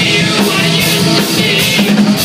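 Live punk rock band playing loudly: a male singer over electric bass guitar and drum kit, with frequent drum and cymbal hits.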